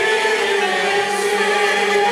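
Mixed choir of men and women singing, holding one long steady note, with a small ensemble of oud, violins and a wind instrument accompanying.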